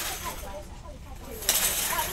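Background chatter of other shoppers: several faint, distant voices talking, with a brief sharp noise about one and a half seconds in.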